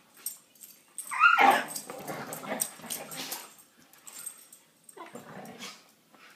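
Two dogs play-fighting: about a second in, a dog gives a sharp yelp that falls in pitch. Growling and scuffling follow for a couple of seconds, and a shorter burst of growling comes near the end.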